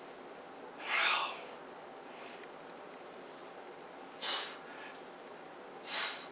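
A man's heavy, forceful breaths during a barbell bench press set: short, sharp bursts of breath about a second in, just past four seconds and at the end, with a fainter one in between, drawn between repetitions.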